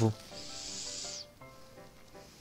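A short high hiss lasting about a second, over faint background music.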